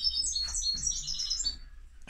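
Small birds chirping: a quick run of short, high chirps that thins out near the end.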